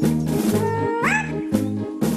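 Bouncy cartoon background music with a repeating bass beat. Over it comes one high, squeaky, meow-like cartoon cry that holds a note and then slides sharply up in pitch about a second in.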